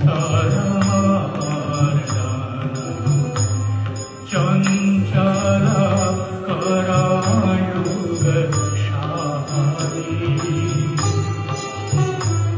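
A man singing a devotional chant into a microphone over music with a steady beat and evenly repeating high jingles. The sound drops briefly about four seconds in, then carries on.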